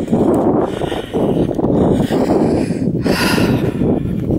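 Wind buffeting the camera microphone in uneven gusts, a loud rumbling rush with no voice over it.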